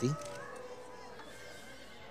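A faint, drawn-out animal call in the background, falling slightly in pitch and lasting about a second, over low outdoor ambience.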